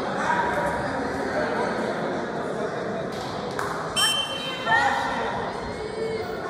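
Voices talking and calling out in a gymnasium hall during a wrestling bout, with a short shrill referee's whistle about four seconds in, followed by a couple of rising shouts.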